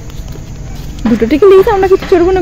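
Low rumble of wind and handling noise on the phone microphone, then from about a second in a loud, high-pitched voice speaking.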